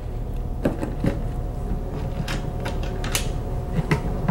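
A suitcase-style case being set down and shifted on a cardboard box: five or six scattered light knocks and clicks over a steady low hum.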